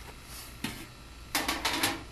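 The insulated lid of a homemade solar oven being handled at the oven's access door. There is one knock, then a quick burst of clicking and clattering in the second half.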